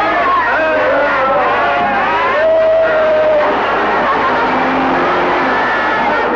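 A car engine running and revving, heard together with the film's background music and voices.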